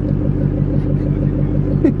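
Car engine idling while the car stands still, a steady low rumble with an even pulse heard from inside the cabin.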